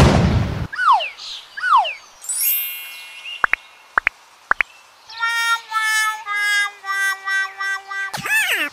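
Cartoon sound effects: a loud burst of music dies away, then two falling whistle slides, a brief high chime, three quick squeaky pops, and a run of four falling held notes, the last one held longest.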